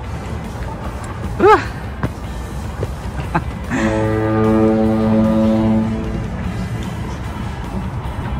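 A foghorn sounding for fog: one long, steady, low blast of about two seconds, starting about four seconds in.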